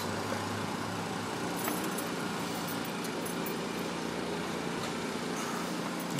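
A thin stream of used engine oil draining from a 2002 Suzuki GS500's sump into a pool of oil in a plastic drain pan: a steady, soft trickle.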